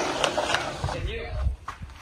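Faint, indistinct speech in the background, with a few soft knocks and low rumbles.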